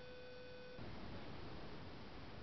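A steady electronic tone that cuts off suddenly a little under a second in, leaving a faint steady hiss.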